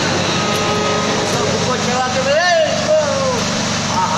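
A steady background rumble and hubbub throughout, with a person's voice heard briefly past the middle.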